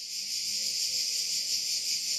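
A steady high-pitched hiss, with nothing else standing out.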